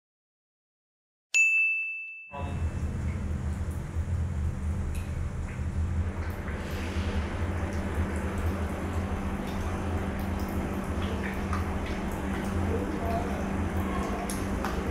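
A single bright ding, a bell-like chime that rings out and fades over about a second. It is followed by a steady low electrical-sounding hum and background noise with a few faint clicks, the room sound of a phone recording in a tiled bathroom.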